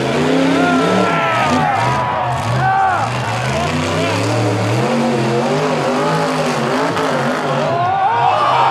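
Rock-bouncer buggy's engine revving hard, its pitch climbing and dropping again and again as the throttle is worked on the rock climb.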